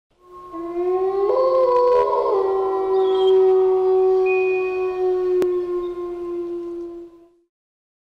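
Wolf howling, recorded as a sound effect: one long howl that rises slightly, holds for several seconds with other howls overlapping near the start, then slides a little lower and fades out.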